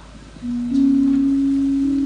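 Gamelan instrument sounding a few long, steady low notes that step upward in pitch, the later ones overlapping, as the lead-in to a sung piece.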